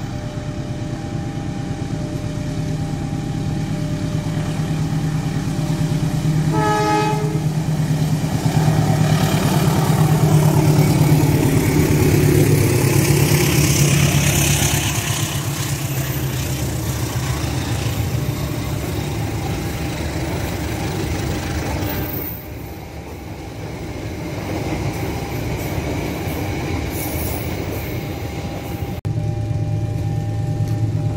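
Diesel-hauled passenger train approaching and passing close by. A short horn blast comes about seven seconds in. The engine rumble builds to its loudest in the middle, then the coaches run past on the rails and the sound eases off.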